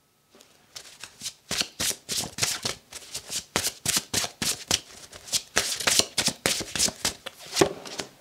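A deck of tarot cards being shuffled by hand: a rapid, uneven run of quick flicks and slaps that goes on for about seven seconds.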